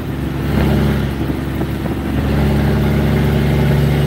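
Semi truck's diesel engine running steadily at road speed, heard from inside the cab as a low drone with road noise, a little louder in the second half.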